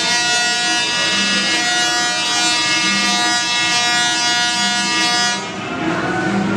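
Tesla coil sparking into a chainmail glove, a steady electric buzz that cuts off about five and a half seconds in.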